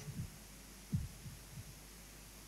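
A few faint, low thumps from a handheld microphone being handled as its holder moves, over a steady low electrical hum.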